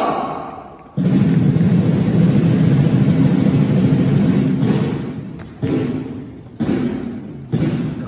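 A drum struck with sticks: a sudden steady roll starting about a second in and running for some three and a half seconds, then single beats about a second apart, each ringing out in the large church.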